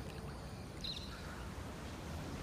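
Swimming-pool water sloshing and lapping faintly around the phone, with a brief faint high chirp about a second in.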